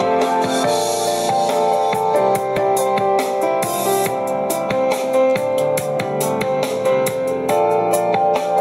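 Instrumental music with a steady beat and held melodic notes, played back through a transparent glass-cased Bluetooth speaker with exposed drivers and a passive radiator.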